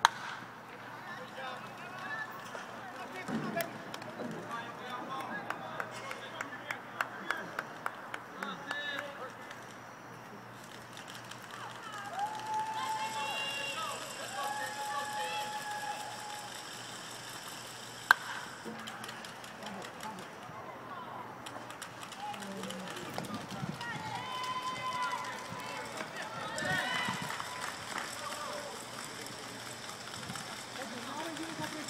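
Ballpark ambience with voices calling and talking on and off, mostly in two stretches near the middle and later on. A run of light ticks comes early, and a single sharp crack comes a little past halfway.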